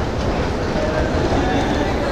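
Steady mechanical rumble and clatter of a moving London Underground escalator and station, heard while riding down it. Faint voices sit underneath.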